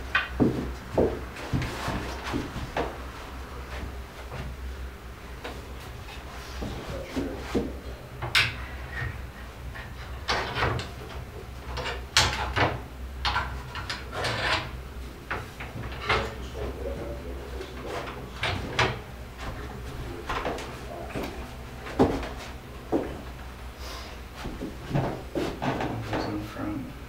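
Irregular wooden knocks, taps and clatter from the rails and canopy poles of a wooden folding field bed being handled and fitted into the frame during assembly.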